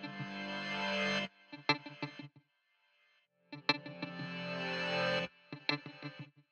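Background music: an electric guitar through effects, playing picked notes that ring into held chords, each phrase cutting off abruptly, with a brief pause about halfway through.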